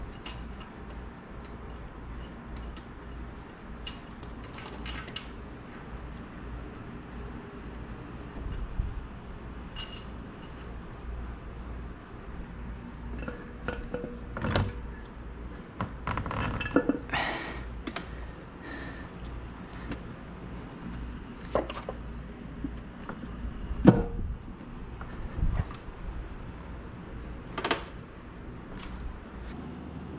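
Scattered metal clinks and knocks of hand tools and engine parts during cylinder head installation on an LS V8 block, over a low steady hum. The knocks come singly every few seconds, the loudest about 24 seconds in.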